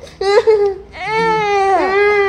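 A sleepy infant fussing and crying: a short cry just after the start, then a long held wail from about a second in.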